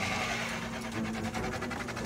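A kitchen fan running with a steady mechanical hum.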